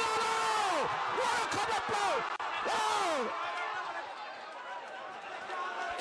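Boxing crowd shouting and cheering, with many voices yelling at once in falling calls. It is loudest over the first three seconds, then dies down.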